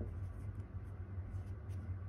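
Faint handling sounds: small wax candles shifted and brushed against paper book pages, with a few light ticks, over a steady low hum.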